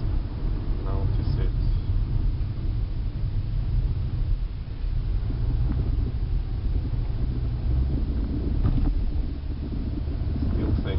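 Steady low engine and road rumble inside the cabin of a moving car.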